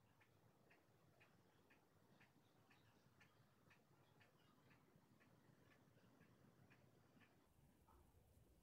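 Near silence with a faint, even ticking about twice a second, which stops near the end.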